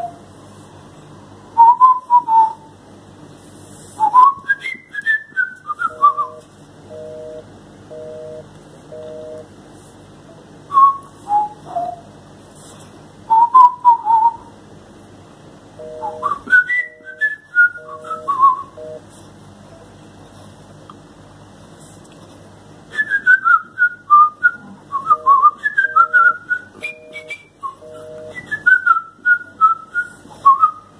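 Short bursts of a telephone busy signal, the pulsed two-tone beep of a call that cannot get through, heard three times from a smartphone as the number is redialed. Loud whistled chirps and falling trills run throughout and are the loudest sound.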